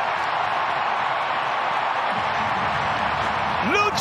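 Stadium crowd cheering in a steady roar of celebration after a home goal.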